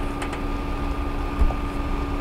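A steady background hum of two held tones, a low hum and a higher whine, with a couple of faint clicks.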